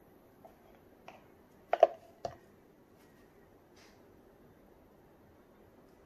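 A few short, sharp clicks and knocks of plastic mixing cups being handled and set down on the table, the loudest just under two seconds in with a second one about half a second later, over a quiet room.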